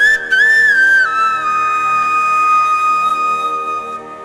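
Devotional instrumental music: a high, flute-like melody over a steady drone, which moves briefly and then settles on one long held note about a second in.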